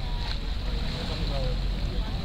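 Low, steady wind rumble on the microphone, with a faint, steady high-pitched insect drone and snatches of distant voices.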